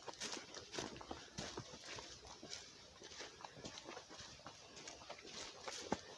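Footsteps of a person walking on a dry, leaf-strewn dirt trail, faint and even at about two steps a second.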